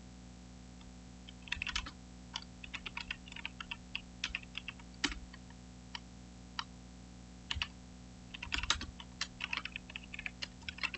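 Typing on a computer keyboard: quick runs of keystrokes that start about a second in, pause briefly midway, then resume in a denser flurry. A steady low hum runs underneath.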